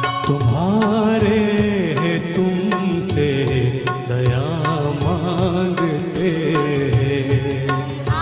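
A man singing a slow Hindi film song melody with bending, ornamented phrases over a live orchestra, with regular percussion strikes keeping the beat.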